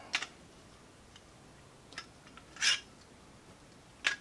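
Plastic foam-dart blaster parts being handled and fitted together by hand: a sharp click at the start, a couple of faint ticks, and a short plastic scrape about two and a half seconds in.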